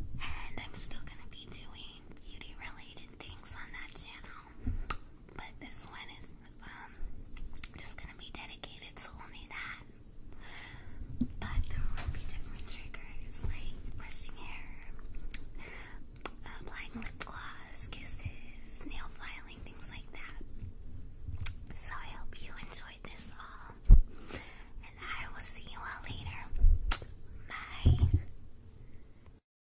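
A woman whispering softly, with a few dull thumps in the last few seconds.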